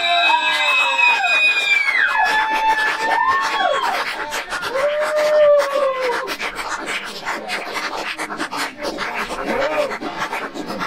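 Several high voices overlapping in long, drawn-out shouts, each held a second or two and falling off at the end. They thin out after about six seconds to a few shorter calls, with many small clicks throughout.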